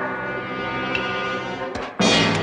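Orchestral film score: a held brass chord with a dark, horn-like sound, then a louder, fuller chord strikes right at the end.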